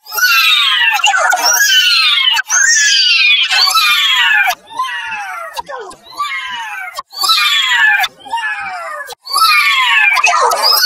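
A high-pitched, effects-processed voice clip of a character crying 'no' over and over, about once a second. Each cry slides steeply down in pitch.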